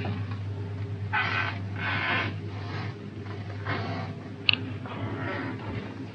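Indoor shop room tone: a steady low hum with a few soft rustling bursts, and one short sharp clink about four and a half seconds in.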